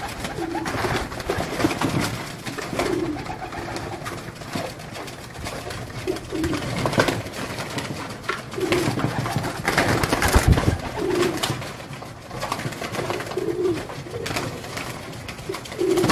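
Several domestic pigeons cooing, with short low coos repeating every second or two, mixed with wing flaps and scuffling on the perches.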